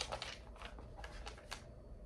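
Faint handling noises: soft rustles and light irregular clicks while a passage is being looked up, over a low steady room hum.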